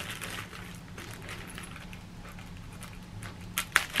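Clear plastic bag rustling and crinkling softly as it is handled, with a couple of sharp clicks near the end, over a faint low hum.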